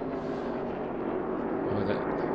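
NASCAR Cup stock cars' V8 engines at full throttle as cars race past, a steady engine drone.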